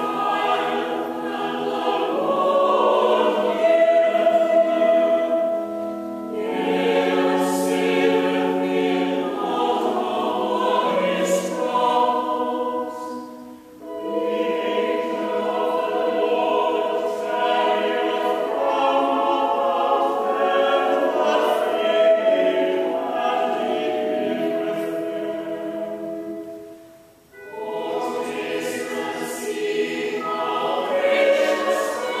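Church choir singing a psalm to Anglican chant in harmony, the text declaimed on held chords, with two short breaks, about halfway through and near the end, between phrases of the chant.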